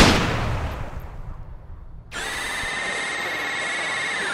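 A single loud gunshot blast that dies away slowly over about two seconds. About two seconds in, a steady high electronic tone starts and holds.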